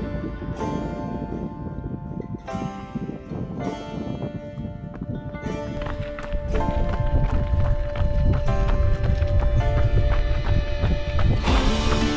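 Instrumental background music with long held notes. About halfway in, a louder low rumble and rhythmic thudding joins it: running footfalls on a gravel trail, picked up by a handheld camera.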